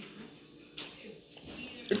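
Faint chewing and mouth sounds of someone eating a chocolate, with a few soft smacks.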